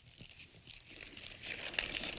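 Thin plastic bag crinkling as eggs are taken out of it. The rustle grows louder toward the end.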